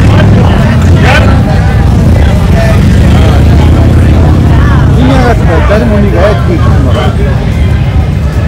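A steady low rumble of motorcycle engines running, with a crowd's voices over it.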